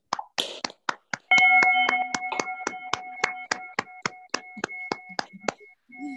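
Scattered hand claps from several participants on a video call, a patter of single sharp claps that thins out near the end. About a second in, a loud steady tone with several pitches starts and holds under the clapping.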